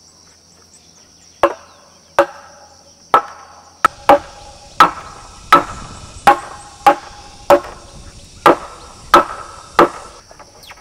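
A hand tool repeatedly striking a wooden post of a timber house frame: about thirteen hard blows starting a second and a half in, roughly one and a half a second, each with a short woody ring. Insects chirr steadily underneath.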